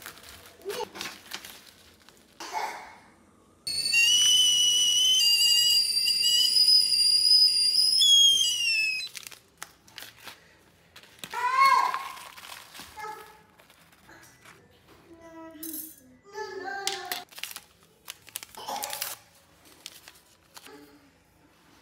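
A stovetop kettle whistling at the boil: a high, wavering whistle of several tones at once starts suddenly about four seconds in, holds for about five seconds, then falls in pitch and dies away.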